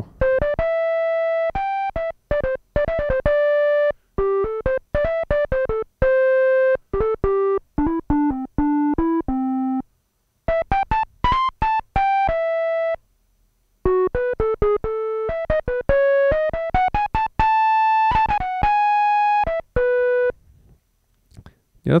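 Behringer DeepMind 12 analog synthesizer playing a monophonic flute patch: a filtered square wave with a short burst of breath-like noise at the start of each note. A melody is played one note at a time, with brief pauses about ten and thirteen seconds in.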